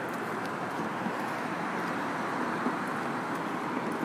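Steady traffic and road noise: an even, unbroken rush with no distinct events.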